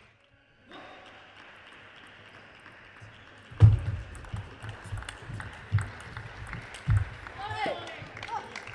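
Table tennis rally: the celluloid ball clicks sharply off the bats and the table in quick succession, with several dull thuds from the players' footwork on the court floor. A short vocal call near the end.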